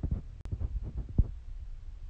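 Phone microphone handling noise: a low rumble with soft, irregular thumps and a few light knocks as the phone is held and shifted close to the face.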